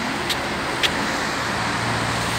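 Road traffic on a wide multi-lane avenue: cars passing on wet pavement in a steady rush of tyre and engine noise. A low engine hum comes in about halfway through, and there is a faint click just under a second in.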